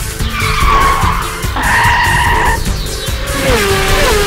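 Cartoon sound effect of a car's tyres squealing twice, each for about a second, as the car skids round a corner, over a steady engine rumble. Near the end a lower engine note drops in pitch.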